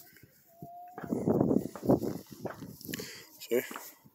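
Loose, gravelly dirt being scraped and brushed aside by hand, a gritty rasp lasting about a second and a half, then a few smaller scuffs. A short spoken "Okay" near the end.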